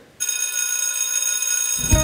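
An electric school bell ringing steadily. It starts suddenly a moment in and rings for the start of class.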